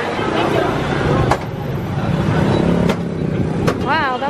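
Street traffic noise: motor vehicles running past close by, with a low engine rumble swelling about two seconds in.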